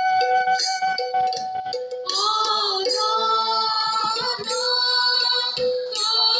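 Borgeet, an Assamese devotional song, sung in unison by a group of mostly female voices over a harmonium drone, with a few strikes of tal (small hand cymbals). The voices grow fuller about two seconds in.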